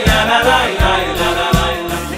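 Male choir singing a Jewish choral medley over electronic keyboard accompaniment, with a steady low drum beat about every three-quarters of a second.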